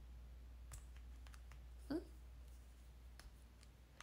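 Near silence in a small room with a low steady hum, a few faint scattered clicks, and one brief rising voice sound from a woman about two seconds in.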